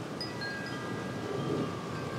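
Wind chimes ringing softly: several thin, clear tones at different pitches sound one after another and ring on over a low steady hiss of outdoor air.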